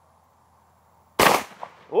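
A single shot from a Benelli M2 LE semi-automatic shotgun firing a Brenneke Black Magic slug, about a second in, its report dying away quickly, followed by a faint click.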